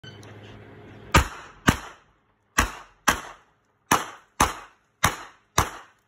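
Handgun fired eight times as four quick double taps, the two shots in each pair about half a second apart, with a short echo after each.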